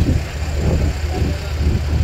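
Steady low engine drone of a river ferry under way across the water.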